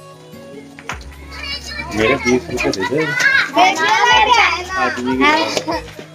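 Several children's and women's voices chattering over one another, getting loud from about two seconds in, over background music.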